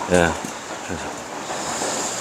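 A man says a short word, followed by a steady hiss of open-air background noise with a faint thin high tone running through it.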